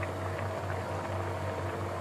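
Chickpea curry bubbling at a boil in an open pressure cooker: a steady crackling simmer over a low, even hum.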